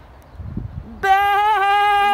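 A loud, drawn-out call at one high pitch starts suddenly about halfway in and holds steady, preceded by a brief low rumble.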